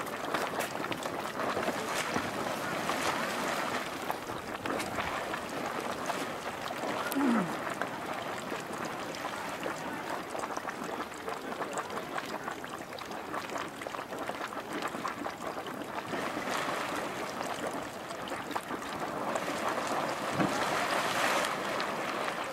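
Marmot Cave Geyser's pool roiling and splashing at full pool, a steady watery churn that swells near the start and again over the last few seconds as the water surges up into a small eruption splash.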